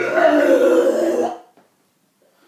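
A man's voice making one loud, drawn-out, guttural non-speech sound lasting about a second and a half, which then cuts off.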